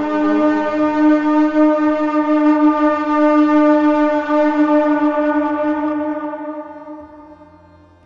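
A war horn blown in one long, steady blast that fades away over the last two seconds.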